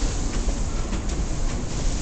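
Rumble of an R179 subway car running on the rails, heard from inside the car, with occasional clicks of the wheels over rail joints.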